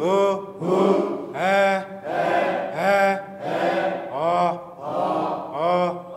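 A voice chanting a single Dinka vowel over and over in a vowel drill, about nine even syllables, each rising and then falling in pitch.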